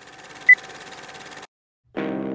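Film-countdown sound effect: a hissing, rapidly rattling noise like a film projector running, with one short, loud high beep about half a second in. It cuts off suddenly about a second and a half in.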